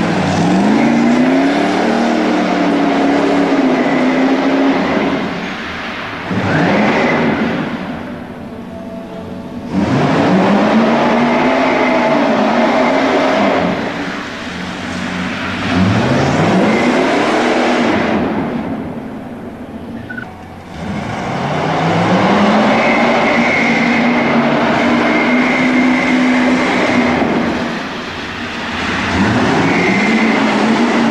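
Hot-rod roadster's engine revving hard through repeated stunt runs. The pitch sweeps up as it accelerates and then holds, with a few brief drops in loudness between the bursts.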